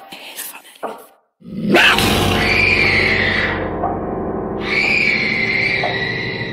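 Horror sound effect: a long, gritty creature-like scream heard twice, the first starting about one and a half seconds in after a brief silence and the second about two seconds later.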